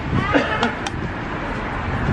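Steady street and traffic noise, with clicks and rustle from the handheld camera being jostled. A short burst of a voice comes about a quarter second in.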